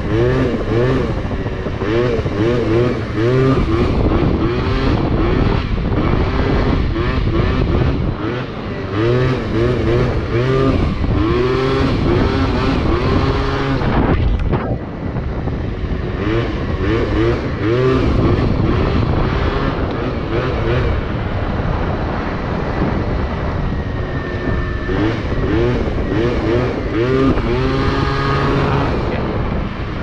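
Yamaha Zuma scooter's two-stroke engine, fitted with a Malossi 70cc cast big-bore kit and a Malossi flip pipe, revving up and down over and over as the throttle is worked while riding. Its pitch rises and falls in quick repeated surges, with a short drop-off about halfway through.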